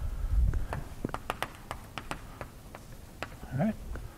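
Chalk on a blackboard as an equation is written: an irregular series of sharp clicks and taps, with a few low thumps at the start.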